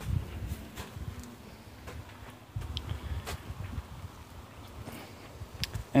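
Footsteps and handling noise from a handheld camera being carried: an uneven low rumble with a few light knocks.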